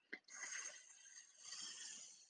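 Faint scratchy squeak of a marker pen drawing a letter on a writing board, in two short strokes about a second apart, after a light tap near the start.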